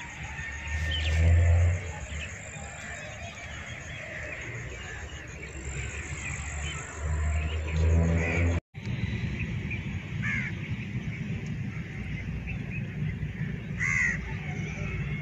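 Crows cawing now and then in the open, a few separate calls, over a steady low rumble, with two louder low rumbles about a second in and again just before the middle.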